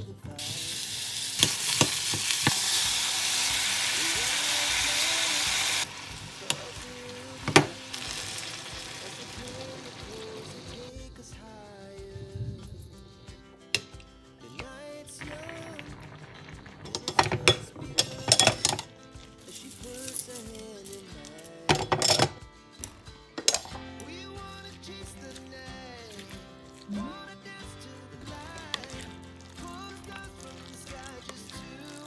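Food sizzling loudly as it is dropped and stirred in a hot pot for about six seconds, cutting off suddenly. Then soft background music with a few clinks and knocks of utensils against the pot.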